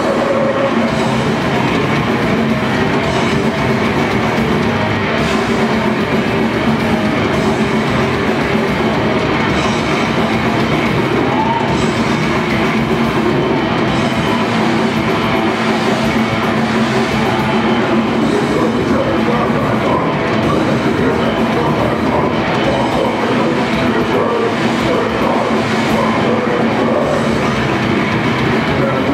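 Grindcore band playing live through a PA: heavily distorted electric guitars and bass over a drum kit, with vocals, in one loud, unbroken wall of sound.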